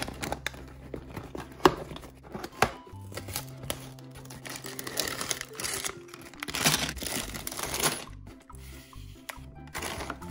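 A cardboard LEGO set box being opened by hand: the flaps tearing and clicking open and the plastic bags of bricks crinkling out, with sharp clicks about a second and a half and two and a half seconds in. Background music plays under it.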